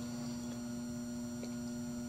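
Steady electrical hum with a faint high whine from the running battery charger and PWM circuit while it charges the battery, with two faint ticks partway through.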